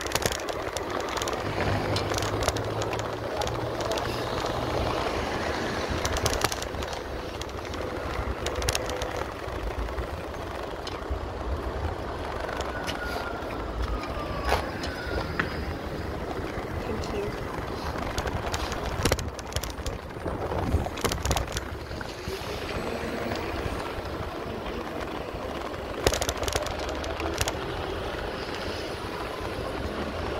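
Wind rushing over the microphone of a phone carried on a moving bicycle, with steady road rumble and a few sharp knocks from bumps.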